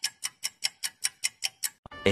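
A clock ticking as an edited-in sound effect, with fast even ticks about five a second that stop shortly before the end.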